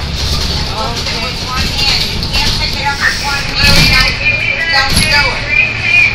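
Several people talking and chattering over the steady low rumble of a vehicle.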